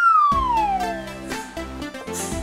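A falling whistle sound effect, one clear tone sliding down in pitch over about a second, with background music coming in about a third of a second in.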